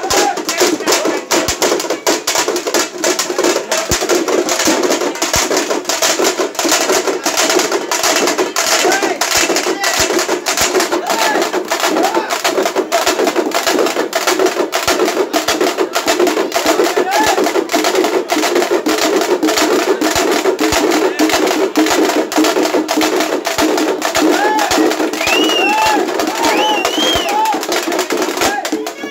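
A group of dappu frame drums beaten with sticks in a fast, loud, unbroken rhythm, with crowd voices over it.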